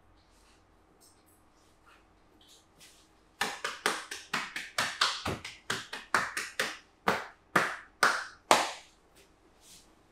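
Hands striking a person's legs in a percussive massage. The blows are sharp and rhythmic, about three or four a second, starting about three seconds in, then four louder, slower strikes near the end.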